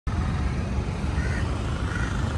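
Steady low outdoor rumble, with a faint short higher sound about a second in.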